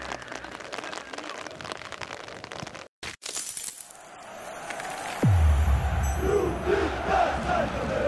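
Sound-design sting for an animated logo: the music tail fades, breaks off briefly, and a glassy shattering crash follows. About five seconds in, a steeply falling tone drops into a deep bass boom, which leads into a stadium crowd chanting and cheering.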